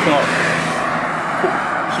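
Road traffic: a car going by on a nearby road, a steady rush of tyre and engine noise that swells towards the middle.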